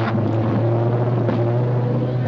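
Beater car's engine running with a steady droning note, heard from inside the cabin while driving.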